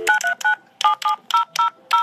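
Touch-tone telephone keypad tones: about eight short two-note beeps keyed in quick succession, as a number is dialed.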